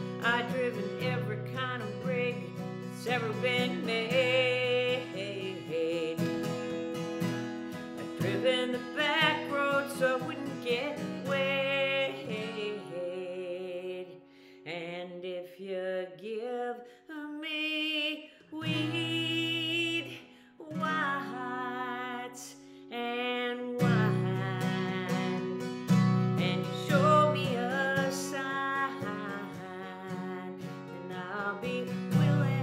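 Steel-string acoustic guitar with a capo, strummed and picked in a country song, with a woman singing over parts of it. The playing thins to sparser single notes in the middle before full strummed chords return.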